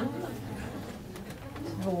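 A room full of people sitting down and rising from their chairs: scattered faint clicks and rustles of chairs and clothing, with a brief low murmur from the group near the start, over a steady low room hum.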